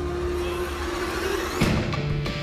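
Dramatic film background music: held tones with a swell building up, then a heavy percussion hit about one and a half seconds in.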